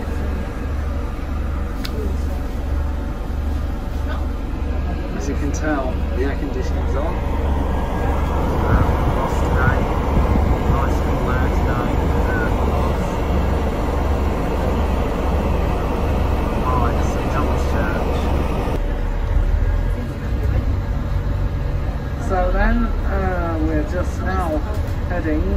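Double-decker bus engine running as the bus drives along, heard from inside the upper deck: a loud, steady low drone with a regular throb, under faint background voices.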